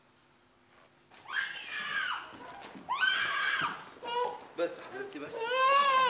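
A feverish infant crying in repeated high-pitched wails, starting about a second in and growing more insistent towards the end.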